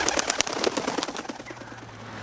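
Cartoon sound effect of a bird's wings flapping rapidly as it takes off, the flaps thinning out and fading over about a second and a half.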